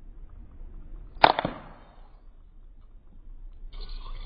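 Pressurized capsule cap on a bottle of tea being twisted open: a sharp pop about a second in, then a second click and a short fading tail, as the tea concentrate is released into the water. A brief rustling noise near the end.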